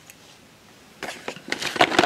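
Hands picking up and handling a small cardboard film box: a quick run of rustles and light clicks starting about a second in, after a moment of quiet.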